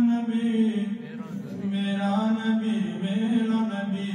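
A man's voice chanting an Urdu naat without instruments, drawing out long, held melodic notes.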